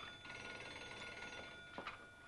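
Electric bell ringing with a rapid metallic rattle, dying away about one and a half seconds in, followed by two small clicks.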